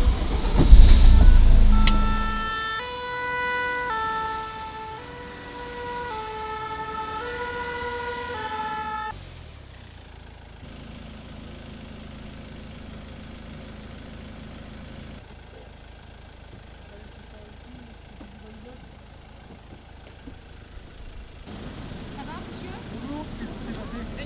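A vehicle starts with a loud low rumble. Then a French fire-service rescue ambulance's two-tone siren sounds for about seven seconds, switching back and forth between two pitches. The siren stops, and the vehicle runs on quietly.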